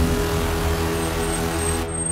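A car's engine running at a steady pitch under a rush of road noise, which cuts off abruptly near the end.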